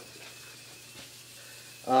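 Quiet, steady workshop room tone with a faint low hum, broken at the very end by a short spoken "uh".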